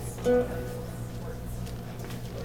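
A single ukulele note plucked about a quarter second in, ringing briefly and dying away, over a steady low hum.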